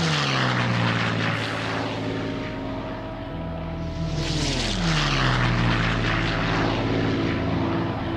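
Propeller aircraft flying past twice, about four seconds apart, the engine note dropping in pitch as each one passes, over a continuous engine drone.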